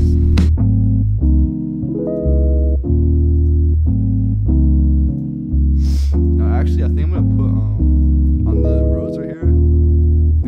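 A deep sampled bass line from a Rickenbacker bass plugin on a dub-bass preset, one sustained note after another, playing over a looped keys chord part in a beat.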